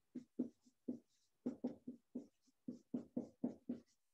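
Quiet, irregular run of short taps or strokes, about four a second.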